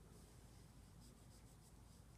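Near silence, with faint rubbing of a fingertip over coloured-pencil swatches on paper.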